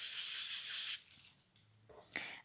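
Oil pastel rubbed round and round on paper while blending, a steady hiss that stops about halfway through.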